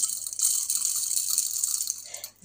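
Coarse Himalayan rock salt crystals poured from the hand into the chamber of a stainless-steel salt grinder: a steady, high-pitched trickle of grains that stops near the end.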